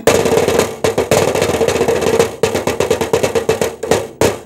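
Fast percussive drumming, a dense run of sharp hits like a drum roll, many to the second.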